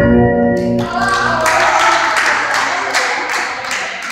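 Recorded Greek dance music ends on a held chord about a second in, then a small group of people applaud, with separate hand claps heard through the rest.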